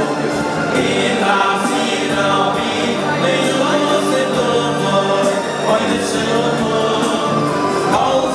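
Male choir singing in harmony, several men's voices holding long sung notes together.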